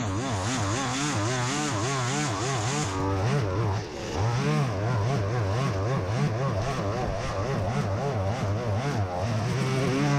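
Petrol string trimmer (whipper snipper) running at high revs while cutting long grass, its engine pitch wavering up and down about twice a second as the line bites into the grass. It eases off briefly about four seconds in, then picks up again.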